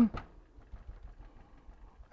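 Faint, soft dabbing of a mini foam ink blending tool pounced onto a small watercolor-paper die-cut, barely above room tone.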